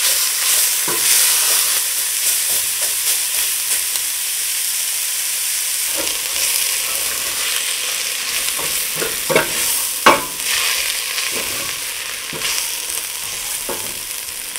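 Sliced onions and garlic with a powdered spice blend sizzling as they sauté in a stainless steel pot, a wooden spoon scraping and stirring across the pot's bottom to keep them from sticking and burning. There is a steady hiss of frying with short scrapes scattered through it; the sharpest scrape comes about ten seconds in.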